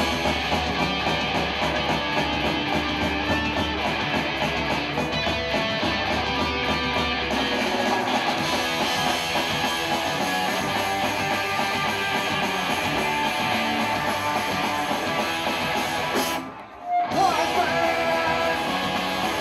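Live punk-rock band playing an instrumental intro: distorted electric guitars with bass and drums. The band drops out for a moment near the end, then comes back in.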